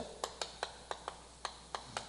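Chalk writing on a blackboard: a quick, uneven string of faint clicks and taps as the chalk strikes the board stroke by stroke.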